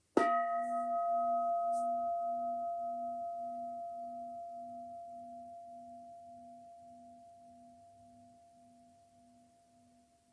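A Buddhist bowl bell (singing bowl) struck once with a striker, ringing with several steady tones that fade slowly over about ten seconds; the lowest tone pulses in a slow wah-wah about twice a second.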